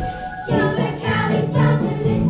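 A group of children singing together over backing music with a steady beat.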